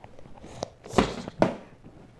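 A few quick knocks and scuffs on a concrete floor, three of them close together about a second in, like running feet and bodies bumping during rough play.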